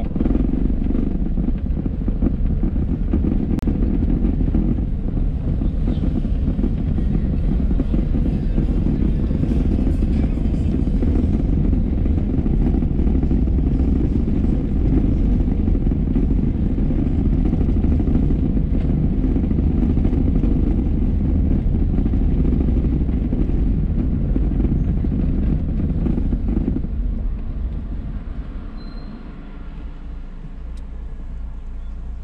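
Steady low rumble of a car's engine and tyres heard from inside the cabin while driving, easing off near the end as the car slows.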